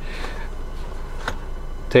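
Hands handling a zippered jump-starter case among cables and plastic wrap in a cardboard box: faint rustling over a steady background hiss, with one light click a little past halfway.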